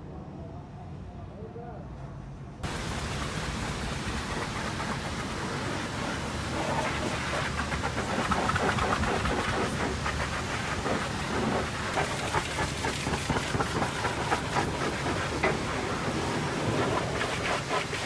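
High-pressure washer jet spraying the steel underframe and wheels of a cargo truck trailer. The spray starts abruptly about three seconds in as a steady hiss and spatter, gets louder partway through, and turns choppier in the second half as the jet sweeps across the beams and tyres.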